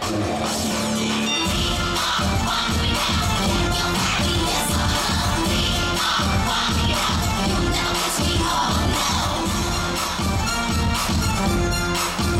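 Upbeat dance music with a steady, heavy beat. A held note opens it, and the beat comes in about a second and a half in.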